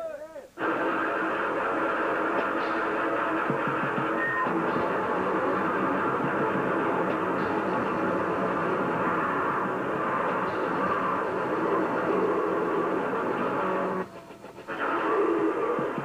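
A noisecore band playing live: a dense, unbroken wall of distorted electric guitar noise kicks in about half a second in. It breaks off briefly near the end, then returns for a short burst.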